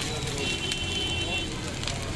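Shredded meat sizzling on a flat iron griddle, with sharp clicks of metal utensils against the griddle, over steady street noise and background voices. A thin high tone is held for about a second near the middle.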